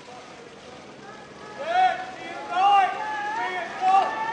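Raised voices shouting drawn-out calls, starting about a second and a half in, over a steady outdoor background.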